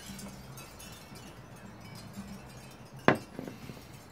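A glass beer mug set down on a table with one sharp knock about three seconds in, followed by a couple of lighter taps.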